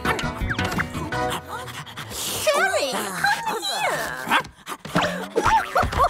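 Background music, then from about halfway in a cartoon pug's excited yips and whimpers: a run of short calls that bend up and down in pitch.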